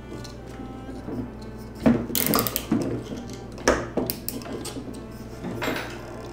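Nylon zip ties being pulled tight around a carbon fibre drone arm: three short ratcheting zips about two, four and six seconds in, over quiet background music.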